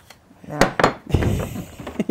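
Plastic food processor lid being twisted and worked loose from its bowl: a few sharp clicks and knocks a little past half a second in, then a duller bump.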